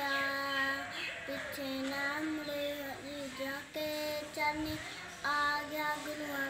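A young boy singing a Punjabi devotional song solo, holding long notes with short breaks between phrases.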